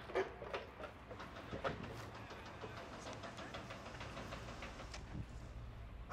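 Faint street ambience: a steady low hum under a light haze, with a few irregular soft knocks and clicks in the first two seconds.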